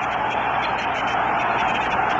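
Steady stadium crowd noise on an old, narrow-band radio broadcast recording, an even murmur with no one sound standing out.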